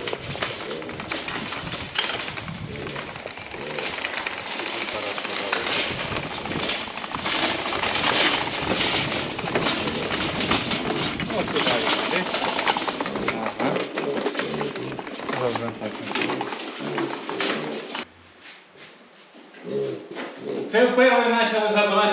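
Metal wire cage cart full of piglets rattling and clattering as it is wheeled over concrete and ground. Near the end, after a brief quiet, a piglet squeals loudly with a wavering cry as it is lifted by the leg.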